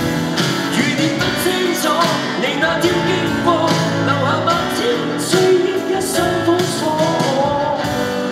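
A male singer singing a Cantopop ballad live into a microphone, with sustained, bending notes over instrumental backing.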